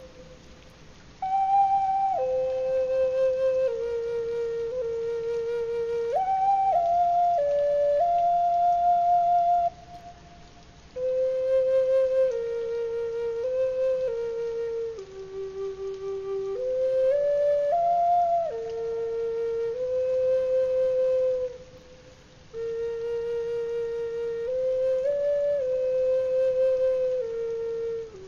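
Background music: a solo flute playing a slow, stepwise melody in long held phrases. Brief pauses fall between the phrases, near the start, about ten seconds in and about twenty-two seconds in.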